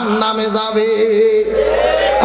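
A man's voice, amplified through a stage microphone, chanting one long held note in the sung style of a Bangla waz sermon. The pitch rises near the end.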